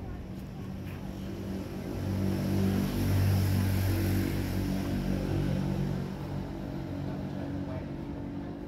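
Engine hum of a passing motor vehicle, swelling about two seconds in, loudest around the middle, then fading away.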